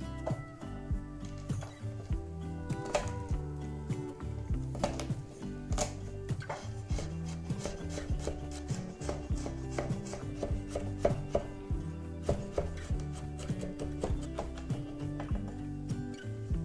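Chef's knife chopping and mincing garlic on a wooden cutting board: repeated, irregular knife strikes on the wood.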